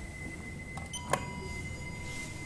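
Elevator chime: about a second in, a sharp click and a short ding of several ringing tones that fade away, over a steady high-pitched whine.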